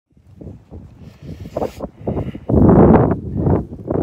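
Wind buffeting a phone's microphone in irregular gusts, building to a loud, dense rush in the second half.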